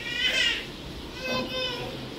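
A young child's high-pitched voice: two short calls or utterances about a second apart.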